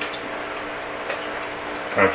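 Person chewing shrimp, with three faint sharp mouth clicks, over a steady low hum.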